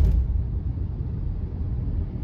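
Steady low rumble of a car heard from inside its cabin, slightly louder at the very start.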